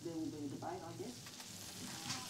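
Steak frying in a pan: a faint, steady sizzle with light crackles.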